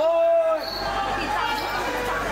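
A high-pitched voice holds a call for about half a second at the start, then voices talk over each other.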